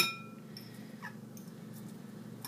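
A metal spoon clinks against a bowl and rings briefly, then diced onion is scooped out with faint light clicks. About a second in comes a faint short squeak that falls in pitch.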